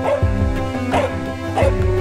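A dog barking in short yips, three times, each falling in pitch, over background music.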